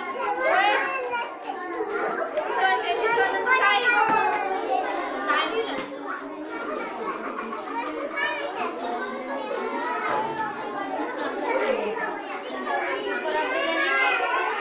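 A roomful of young children talking and calling out at once, a steady din of many overlapping high voices in which no single voice's words stand out.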